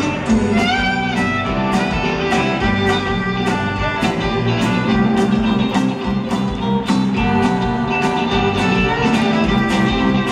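Live folk-rock band playing an instrumental passage, with the violin to the fore over accordion, electric bass, guitar and drums keeping a steady beat. A few sliding violin notes come about a second in.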